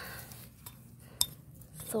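Hands working dry, stony garden soil around a newly planted carrot top: a soft rustle of soil, then a few sharp clicks with one brighter metallic clink about a second in.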